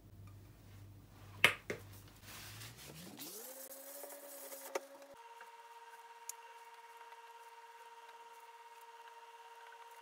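Induction hob running under a pan: a low hum, a sharp knock, then a whine that glides up in pitch, holds, and jumps to a steady high tone that stays on, with a couple of faint clicks.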